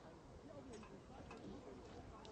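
Faint, distant voices of footballers calling and talking on the pitch, with a few light ticks about a second in.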